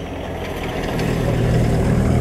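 A low, steady, engine-like rumble with a hum underneath, growing slowly louder.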